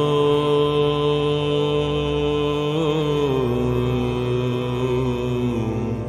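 Devotional chant-like singing: a voice holding long, steady notes, stepping down in pitch twice, about three and five and a half seconds in.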